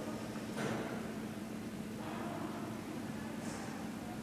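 Steady low hum of a hydraulic elevator's machinery, with a single knock about half a second in.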